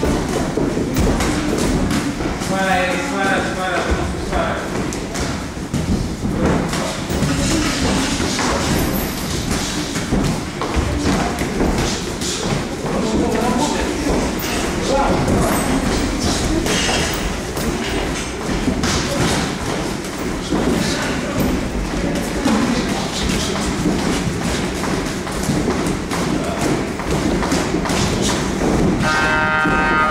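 Irregular dull thuds of boxers sparring in a ring: gloved punches landing and feet stepping and shuffling on the canvas, with voices heard now and then.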